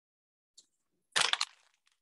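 Things being set down on a wooden tabletop: a short crackling clatter of a few quick clicks about a second in, lasting under half a second, with a faint tick just before.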